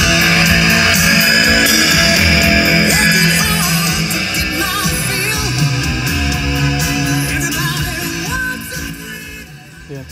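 Heavy rock music with electric guitar and vocals playing loudly through a newly installed car stereo, with a Jensen head unit, in a 1958 Chevrolet Impala. The music fades down over the last couple of seconds.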